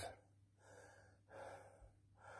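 Two faint breaths from a man ill with COVID-19, each about half a second long.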